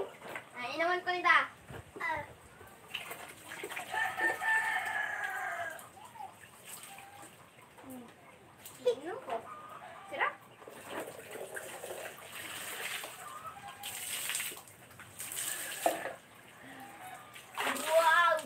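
A rooster crowing once: a single long call of about three seconds, a few seconds in.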